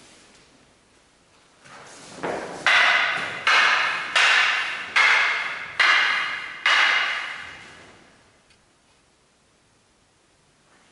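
Wooden practice swords (bokken) clashing six times in quick succession, about one strike every 0.8 seconds, each loud clack ringing on briefly in the hall.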